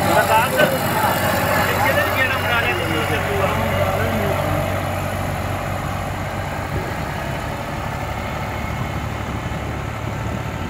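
Eicher 551 tractor's diesel engine running steadily, with indistinct voices over it for the first few seconds.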